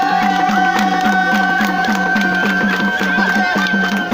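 Live Nepali folk dance music: a bamboo flute holds one long note, ending shortly before the end, over a quick, even drum beat.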